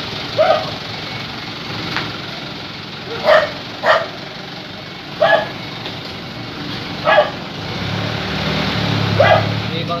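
A dog barking: about six single barks, spaced a second or two apart.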